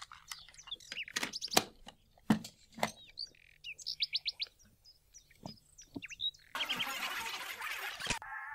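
Small birds chirping, with a quick run of chirps about four seconds in, among scattered light clicks and knocks. A denser hiss comes in near the end.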